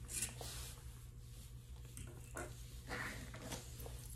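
A few faint snips of grooming shears trimming a Yorkshire Terrier's coat, over a steady low hum.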